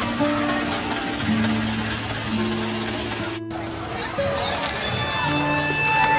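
Background music with long held notes, cut off by a brief dropout about three and a half seconds in, followed by the voices of a crowd.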